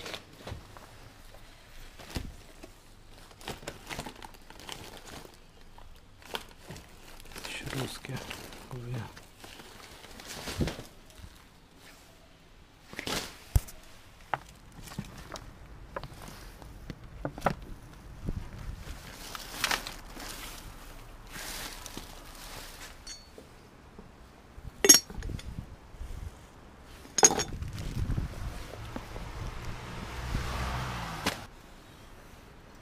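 Hands rummaging through discarded items in a bin: record sleeves, plastic, paper and cardboard rustling and crinkling, with scattered knocks and clinks as objects are picked up and set down. The two sharpest knocks come near the end.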